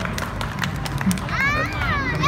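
Audience of onlookers chattering, with scattered sharp claps. A high-pitched voice calls out with rising and falling pitch about one and a half seconds in.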